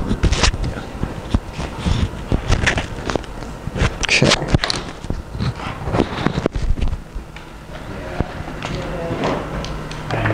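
Scattered clicks and knocks of an HDMI cable and adapter being handled and plugged in, with murmured voices in the room.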